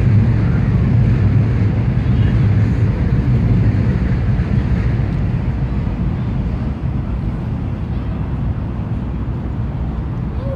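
Outdoor city ambience by a river: a loud low rumble that eases off a little in the second half, with faint voices of people in the background.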